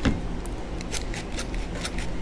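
Stainless steel squeeze-handle flour sifter clicking as its handle is squeezed over and over, about four clicks a second, sifting flour.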